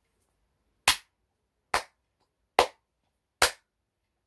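Four slow hand claps, evenly spaced a little under a second apart.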